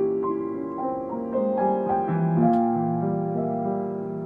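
Solo piano playing a piece of contemporary music: notes and chords struck about two or three times a second, each left ringing under the next.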